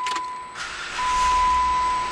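2008 Jeep Wrangler Unlimited's 3.8-litre V6 being started and settling into an idle, with a hiss that swells about a second in. Over it a steady high-pitched warning chime sounds, breaking off briefly about once a second.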